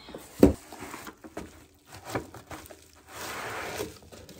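Groceries being handled: a solid thump as an item is set down about half a second in, a light click around two seconds, then about a second of packaging rustling near the end.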